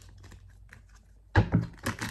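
A deck of tarot cards being shuffled and handled, with a quick run of sharp clicking taps starting about a second and a half in.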